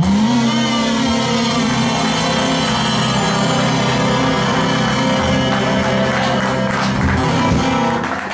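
Live acoustic blues band of acoustic guitars and drums holding one long final chord at the end of the song, sustained evenly at full volume with cymbal shimmer over it.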